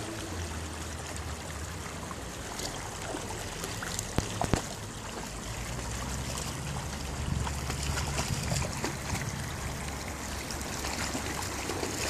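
Creek water running and trickling steadily, with a few short, sharp sounds about four seconds in.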